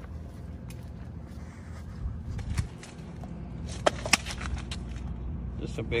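Low rumble of wind and handling noise on a phone microphone carried along a pier, with two sharp clicks about four seconds in. A man's voice starts right at the end.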